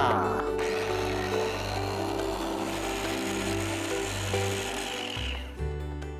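Small electric food chopper running, its blades grinding tender coconut flesh, with a steady high motor whine. It starts about half a second in and winds down and stops about five seconds in.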